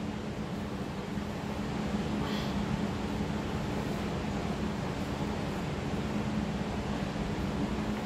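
Steady electric fan hum: an even whirr with a low steady tone running under it.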